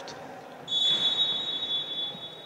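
Referee's whistle: one long, steady high blast starting about two-thirds of a second in, in a reverberant sports hall.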